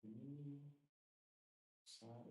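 A man's voice, faint: one drawn-out hesitation sound lasting under a second, then silence, then a hiss and the start of another word near the end.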